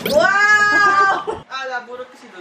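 A person crying: one long, high, wavering wail of about a second, trailing off into softer sobbing sounds.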